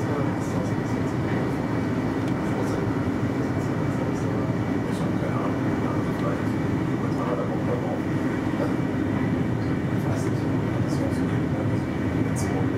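Intercity train running at speed, heard from inside the driver's cab: a steady low rumble of wheels on rail, with light high ticks now and then.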